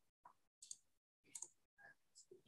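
Near silence with faint clicks in two small groups, less than a second apart, from a laptop being handled and operated.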